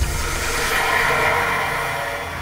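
Logo-sting sound effect: a sharp hit right at the start, then a sustained, hissing, shimmering swell with faint musical tones beneath it, slowly fading.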